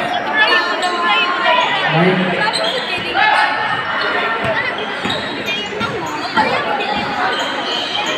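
A basketball bouncing on the court floor during play, among the shouts and chatter of players and spectators, echoing in a large roofed court.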